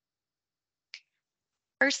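Dead silence broken by one short, sharp click about a second in, then a woman starts speaking just before the end.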